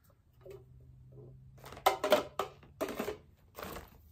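Handling noise: a quick run of sharp clicks and knocks as hard plastic tumblers are set down, with a short rustle of a woven plastic shopping bag near the end.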